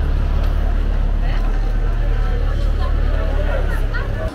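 Busy market street ambience: a steady low rumble with people's voices in the background.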